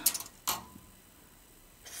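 Clicks from a metal tape measure being handled: a brief rattle at the start and one sharp click about half a second in.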